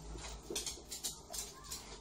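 Faint handling noise from a hand-held camera being moved: a few soft knocks and rustles over a low rumble.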